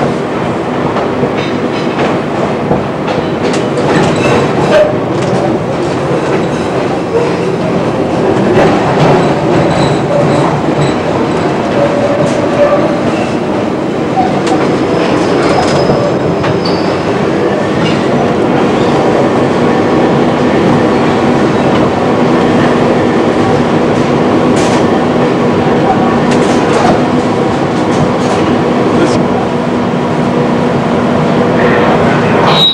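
Chicago L rapid transit train running on the elevated Loop structure, heard from the front of the car. A steady rumble carries wheels clicking over rail joints and switches, with a few brief wheel squeals.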